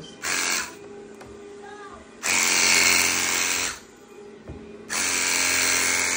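VANTOOL carpet-cleaning wand drawn across carpet in strokes: three bursts of suction-and-spray hiss, a short one at the start and then two longer ones of about a second and a half each, over a steady hum from the extraction machine.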